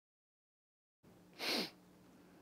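Total silence, then faint room tone cuts in about a second in. About a second and a half in comes one short, breathy hiss from a man close to a headset microphone, a quick sniff or sharp breath rather than speech.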